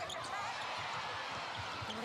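Arena crowd noise, a steady roar of many voices, with scattered thuds of players' feet and the ball on the wooden netball court.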